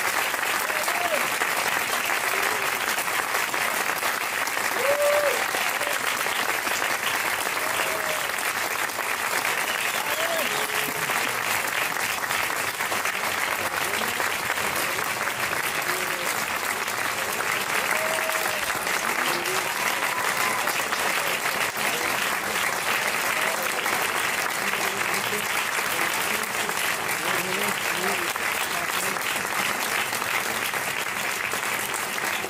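Audience applauding, steady dense clapping throughout, with a few voices calling out among it.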